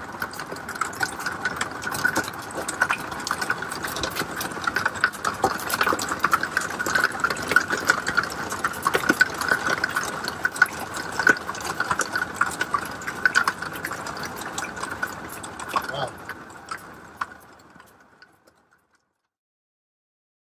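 Hail and heavy rain pelting the vehicle, heard from inside: a dense, irregular patter of hard impacts over a steady hiss. It fades out over the last few seconds.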